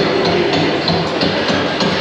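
Exhibit soundtrack of background music mixed with a dense clatter of shipyard hammering, as of riveters working on a steel hull's shell plates.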